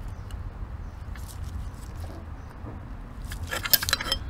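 Faint clicks and light scraping of gloved hands working the fuel rail and its plastic fuel-line clip, over a low steady rumble. Near the end comes a busier run of sharp clicks and scrapes.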